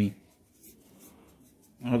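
Faint rubbing and handling of a slim body-spray can being turned over in the hand, between a man's words at the start and near the end.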